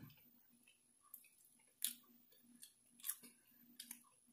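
A person chewing food close to the microphone: about five short, faint wet smacks and clicks scattered through otherwise near silence.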